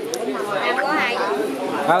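Only speech: several people talking over one another in Vietnamese.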